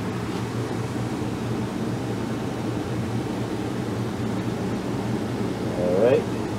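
Steady low hum with an even hiss from a running ventilation unit, such as the trailer's air conditioner. A brief vocal sound comes right at the end.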